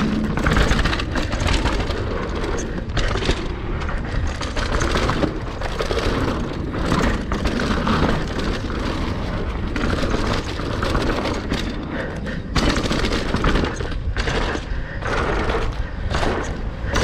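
Mountain bike rolling fast down a dirt singletrack: tyres crackling over dirt and dry leaves, with a steady stream of rattles and knocks from the bike over bumps and a heavy low rumble of wind on the camera's microphone.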